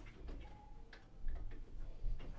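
Scattered light clicks and knocks of hi-fi interconnect cables and plugs being handled, unplugged and reconnected at an equipment rack.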